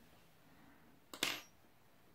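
Quiet room with one brief soft scrape about a second in: yarn being drawn through a crocheted piece as the yarn tail is pushed into it.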